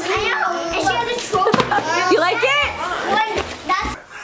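Several children squealing and shouting excitedly, high voices sweeping up and down and overlapping, dying away near the end.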